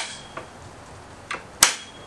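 Rugged Buddy folding steel table leg swung open and snapping into its locked position: a sharp metallic click about one and a half seconds in, with a brief ring, after a couple of softer clicks.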